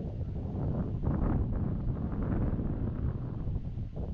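Wind buffeting the microphone, an uneven low rumble that swells in gusts, strongest from about a second in.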